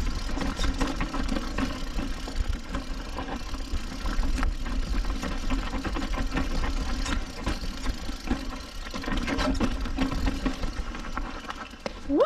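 Mountain bike being ridden fast down a rough, rocky downhill trail: continuous irregular rattling and clattering of the frame, chain and suspension over rocks and roots, over a steady low rumble.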